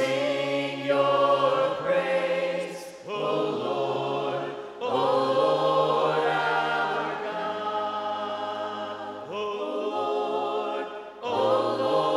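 A small group of voices singing a worship hymn a cappella in harmony, in long sustained phrases with short breaks between them.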